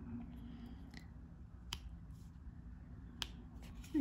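Small, sharp clicks of a diamond-painting drill pen working on resin drills, two plain ones about a second and a half apart with a few fainter ticks between, over a low steady background hum.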